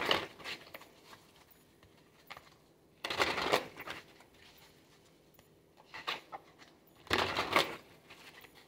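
A tarot deck being shuffled by hand: four short bursts of cards riffling and slapping together, the longest about three seconds in and near the end.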